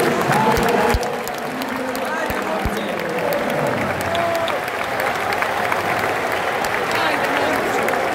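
Basketball arena crowd: many voices shouting and talking over one another, with scattered applause and clapping. A few low thuds come in the first three seconds, and the crowd quiets somewhat about a second in.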